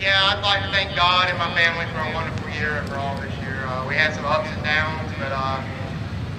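A person speaking almost without pause, over a steady low background rumble.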